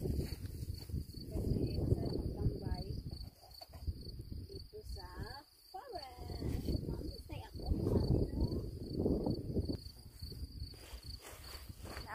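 Wind rumbling on the microphone in gusts, strongest over the first three seconds and again about eight seconds in, over a steady, high, pulsing chirp of crickets in the grass.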